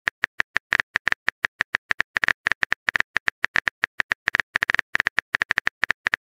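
Phone keyboard typing sound effect: a rapid run of short, identical key clicks, roughly eight a second, as a text message is typed out letter by letter.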